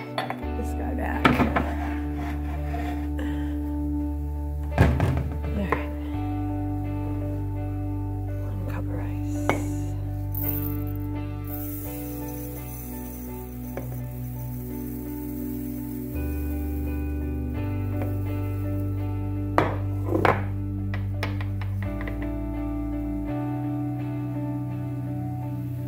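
Background music with a steady bass line that changes every few seconds. Now and then glass measuring cups clink and knock on a countertop as rice is measured out.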